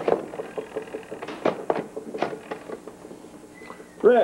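A series of light clinks and taps of glassware being handled on a small table.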